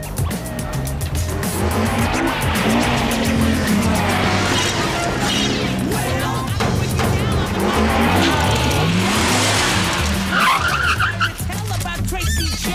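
Road traffic: car engines running and passing, with a brief high screech near the end, over background music.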